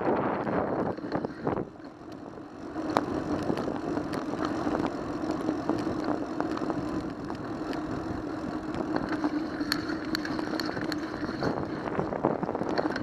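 Riding noise picked up by a bicycle-mounted camera while cycling along a city street: wind on the microphone, tyre noise and small rattling clicks. A steady hum sets in about three seconds in and carries on to the end.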